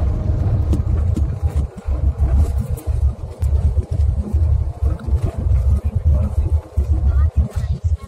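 Wind buffeting the microphone of a camera held out of a moving vehicle: a loud, choppy, gusting rumble that keeps cutting in and out, over the vehicle's road noise.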